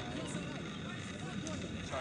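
Indistinct, overlapping voices over a steady background noise.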